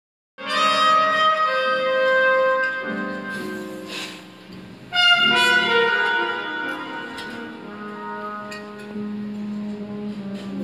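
Live jazz trumpet playing long, sustained notes over band accompaniment. The music starts about half a second in, eases off around four seconds, and a second loud trumpet phrase enters about five seconds in before settling into softer playing.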